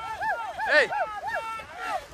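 Men's voices shouting excitedly, with a loud cry of "ey!" a little before the middle.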